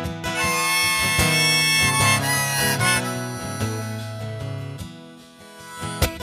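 Harmonica solo over a strummed acoustic guitar, in an instrumental break of a country song; the harmonica notes die away near the end.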